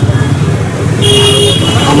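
A vehicle horn sounds once about a second in, a short steady beep of about half a second, over continuous street traffic noise.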